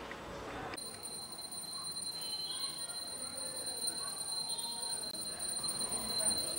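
Small hand bell rung continuously during an aarti, starting about a second in: a steady high ringing, with faint voices underneath.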